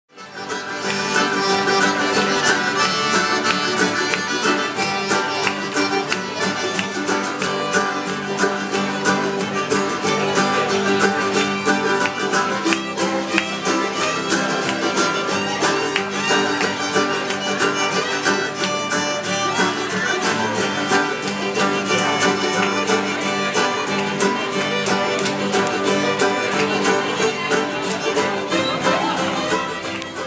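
Cajun jam band playing live: Cajun accordion, fiddle, mandolin and acoustic guitars together with a steady beat.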